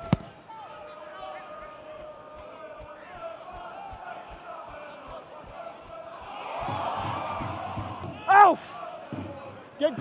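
A football kicked hard with one sharp thump at the start, then the murmur of a stadium crowd with distant players' calls. A run of soft low thuds comes about three a second, the crowd noise swells about seven seconds in, and one loud shout follows.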